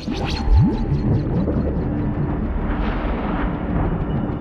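Dramatic film score over deep rumbling sound effects, with a rising low sweep about half a second in, the loudest moment, and a held low tone after it.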